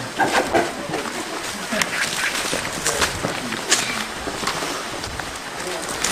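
Indistinct background voices, with scattered light taps of footsteps on stone paving.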